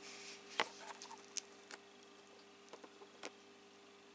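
Faint, scattered clicks and light taps from a clear plastic orchid pot of coconut-husk chips being handled and turned in the hand, over a steady low electrical hum.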